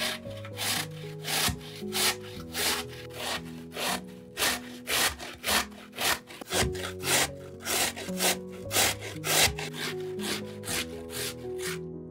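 Peeled raw potato grated on a stainless-steel box grater: repeated rasping strokes, about two a second.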